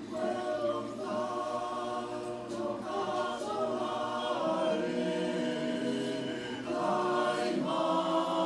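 Male choir singing in several-part harmony on long held chords, the voices growing louder near the end.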